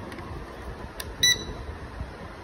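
Toy drone remote controller powering on: a click from the power switch about a second in, then one short high-pitched beep.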